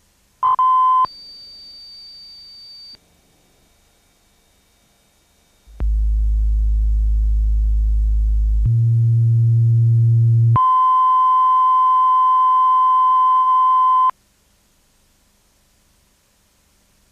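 Broadcast test tones during a transmission fault. First a short 1 kHz beep and a faint high whistle, then a loud low hum that steps up in pitch about three seconds later. Then a steady 1 kHz line-up tone runs for about three and a half seconds and cuts off suddenly.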